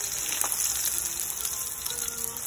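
Vienna sausages sizzling in hot oil in a frying pan, a steady crackling sizzle, with a light click of metal tongs turning them about half a second in.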